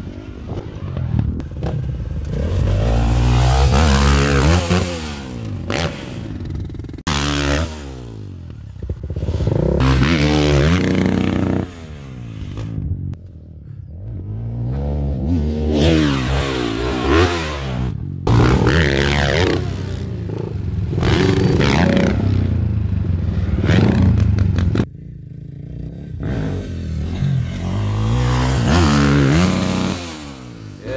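Dirt bike engine revving up and easing off again and again, in several separate passes joined by abrupt cuts.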